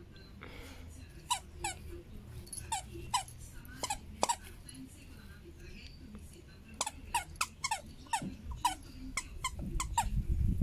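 Squeaker inside a plush dog toy squeaking as a dog bites and chews it: a dozen or so short squeaks, each falling in pitch, in two bouts, one from about one to four and a half seconds in and another from about seven seconds on.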